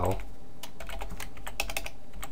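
Typing on a computer keyboard: a quick run of key clicks, coming thickest from about half a second in.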